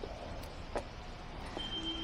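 Low, steady outdoor background noise with a few faint ticks spread through it.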